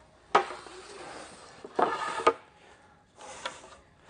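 Pine boards being handled on a store rack: a sharp wooden knock just after the start, a scraping slide, then a louder scrape or clatter about two seconds in.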